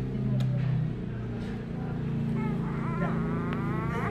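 An engine running steadily, its pitch rising about three seconds in.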